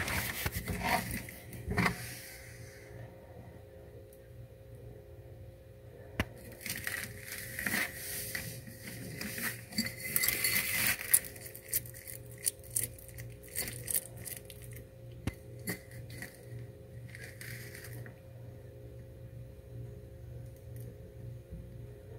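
Faint, scattered clicks and taps on a shallow dish: tweezers setting feeder insects into the bowl at first, then a bearded dragon's mouth knocking on the dish as she snaps and licks at the insects, with a busier run of taps in the middle.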